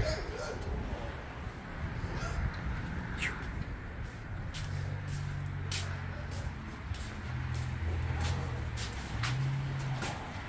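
A low mechanical hum that steps up and down in pitch a few times, with scattered light clicks and knocks.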